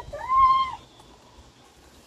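A small shaggy dog giving one short, high whine that rises and falls in pitch, about half a second long, near the start.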